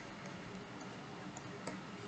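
Faint room hiss with a few light ticks of a stylus tapping and writing on a tablet screen.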